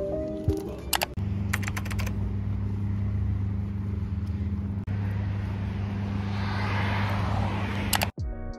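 Soft lo-fi background music for the first second. Then outdoor street sound: a few sharp clicks just after the cut, a steady low hum, and a car passing near the end, its noise swelling and fading.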